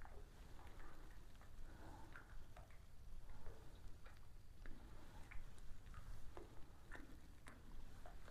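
Quiet outdoor background: a faint low rumble with scattered soft, irregular ticks and clicks.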